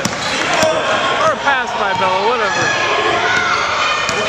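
A basketball bouncing on a hardwood gym floor as it is dribbled, under a steady mix of overlapping voices of players and spectators.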